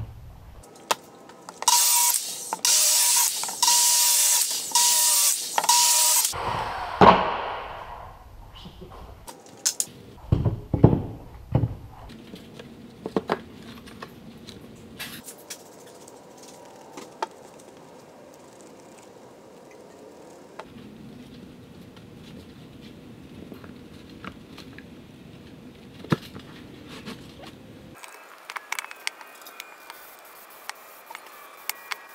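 A power saw cutting a sheet of OSB in several short, loud passes over a few seconds, then running down, followed by a few low knocks and quieter handling of board and materials on the bench.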